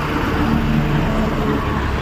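Steady road-vehicle noise, an engine and tyre rumble like traffic passing close by.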